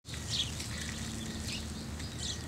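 Outdoor ambience that cuts in suddenly: small birds chirping several times in short calls over a low steady rumble.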